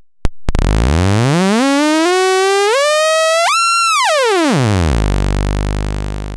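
Breadboarded voltage-controlled oscillator's output as its tuning potentiometer is turned: a slow ticking becomes a buzzy tone that climbs in steps to a high pitch, then glides back down to a low buzz and fades.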